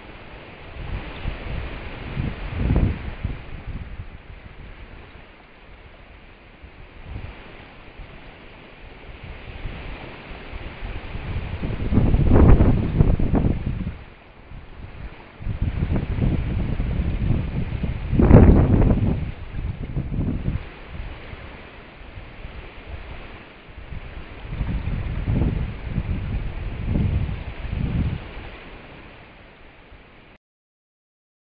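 Wind buffeting a trail camera's built-in microphone in irregular gusts over a steady hiss, loudest about twelve and eighteen seconds in.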